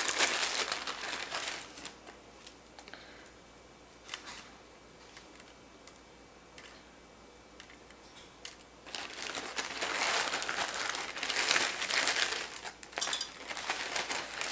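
Clear plastic bag holding dried vanilla beans crinkling as it is handled: briefly at first, then louder and for several seconds in the second half, with a few light clicks in the quiet stretch between.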